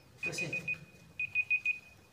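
Phone timer alarm beeping: quick high beeps in bursts of about four, repeating, with one longer held tone in between.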